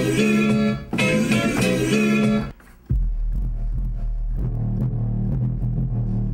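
A sampled hip-hop loop plays on the producer's setup and cuts off abruptly about two and a half seconds in. After a brief gap, a deep bass line plays on its own, the part he says sits under the kicks.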